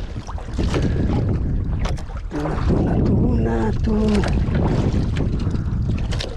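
Wind buffeting the microphone and cloth rubbing against it, a dense steady rumble. A man calls out once in the middle, between about two and a half and four seconds in.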